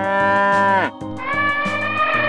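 A cow mooing once, about a second long and dropping in pitch at the end, over background music with a plucked bass line. A second long, steady call begins just after it.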